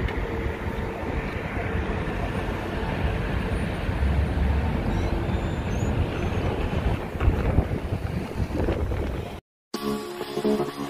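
Wind buffeting the microphone: a steady low rumble and hiss that cuts off suddenly near the end.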